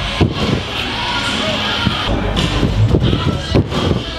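A run of irregular thuds and knocks as a tumbler's hands and feet strike a sprung tumbling track and landing mats, over the steady background noise of a busy gym hall.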